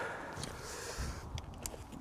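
Faint footsteps of wellington boots on wet river stones, with a few light, sharp clicks of stone underfoot.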